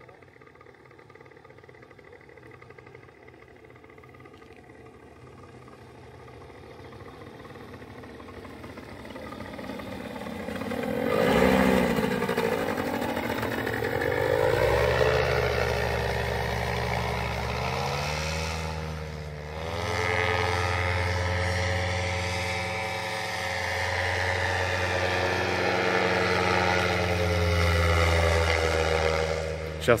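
Paramotor trike's engine and propeller droning, growing from faint to loud over the first ten seconds or so as it flies closer. Its pitch swoops down and up several times around the middle, then it runs steady and loud.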